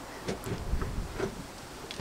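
A few faint, irregular clicks and knocks from a Vauxhall Corsa VXR's gear lever, fitted with a short shifter, being moved through the gears with the engine off.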